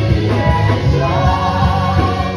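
Gospel worship group singing a Portuguese-language song together in harmony, backed by a band with electric guitar and a steady beat. The held notes of the voices carry over the low, pulsing accompaniment.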